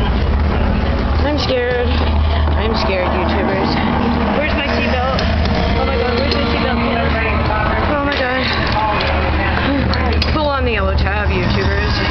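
Indistinct chatter of several people seated together in a ride vehicle, over a steady low rumble.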